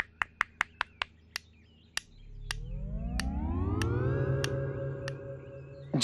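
A background-score sound effect: a quick run of sharp clicks, about five a second at first and then slowing and thinning out. Beneath them a deep synthesized tone swells up, rising in pitch from about two seconds in and then holding steady.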